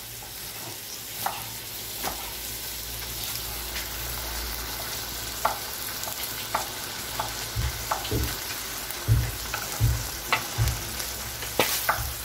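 Cubes of mutton sizzling in sheep's tail fat in a large steel pan: a steady frying hiss, with scattered clicks and a few low knocks in the second half.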